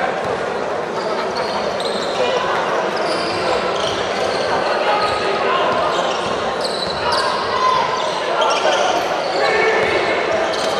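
Basketball being dribbled on a hardwood court during live play, under the steady murmur of an arena crowd and players' calls, echoing in a large hall.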